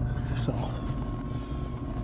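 Steady low mechanical hum of an outdoor wood boiler's draft fan running, with a few steady tones over it and a brief sharp sound about half a second in.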